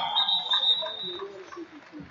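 Referee's whistle blown once, a steady high tone lasting about a second, signalling the end of the wrestling match. Faint voices underneath.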